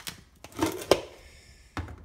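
A plastic lid being pried off a food-storage container: a few sharp clicks and snaps, the loudest about a second in, then a knock near the end.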